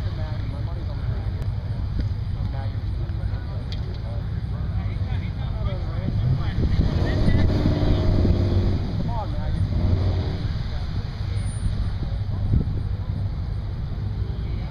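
Car and pickup truck engines idling at a drag-strip starting line: a steady low rumble that grows louder for a few seconds in the middle.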